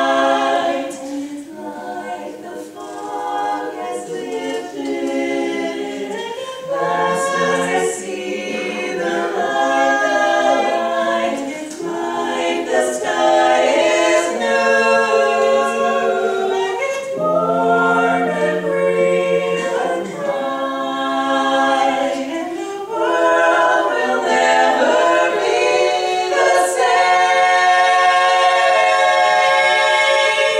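Women's a cappella barbershop-style quartet singing in four-part close harmony, holding sustained chords that shift every second or two, growing louder and fuller toward the end.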